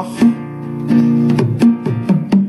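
Acoustic guitar strummed, a few chord strokes with the chord left ringing between them.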